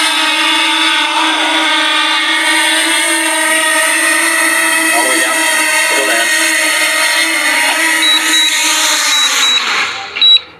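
Small DJI quadcopter drone's propellers whining steadily in a low hover as it descends to land, the pitch sagging near the end. A few short high beeps sound near the end.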